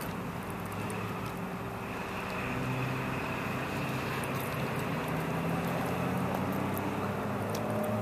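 Road traffic: steady traffic noise with the low hum of a vehicle engine, growing a little louder from about two seconds in.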